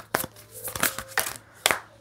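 A deck of Moonology oracle cards being shuffled by hand, the cards slapping and riffling against each other in quick, irregular crisp clicks.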